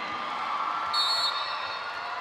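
Steady murmur of an indoor arena crowd. About a second in comes a short, high whistle blast, the referee's signal that the serve may be taken.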